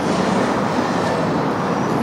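Steady rush of city road traffic, cars driving past on a wide multi-lane street.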